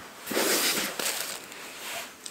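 Rustling of a plastic bag and fabric being handled on a table, loudest in the first second and then fading.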